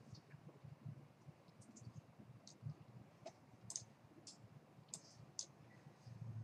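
Faint, irregular clicks of a computer mouse, about ten of them spread over a few seconds, against near silence.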